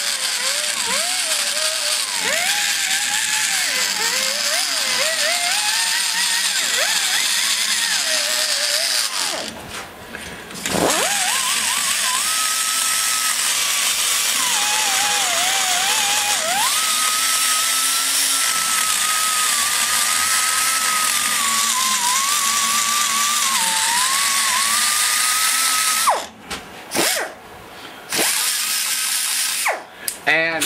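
Die grinder running a grinding stone against the valve seat edge of an aluminium Ford 2.0 cylinder head: a steady whine over hiss, its pitch wavering as the stone works the metal. It stops about ten seconds in, spins back up a second later, and stops again about four seconds before the end.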